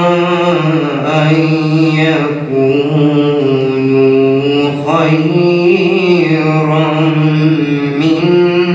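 A young man's solo voice chanting a Quran recitation in Arabic, with long held notes that rise and fall in pitch and brief breaks for breath.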